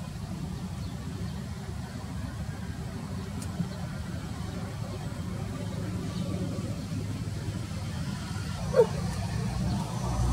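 Steady low engine-like rumble, growing a little louder toward the end, with one brief high-pitched call near the end.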